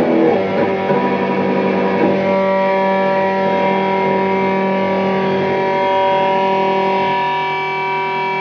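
Kramer electric guitar through distortion: busier playing for about two seconds, then a chord left ringing and sustaining steadily.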